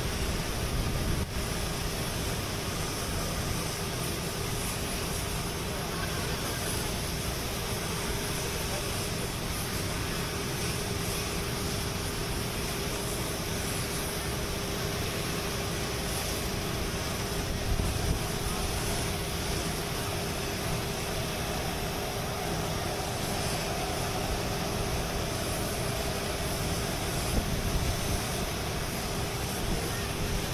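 Steady running noise of a parked airliner on the airport apron: an even rushing sound with a constant hum tone running through it.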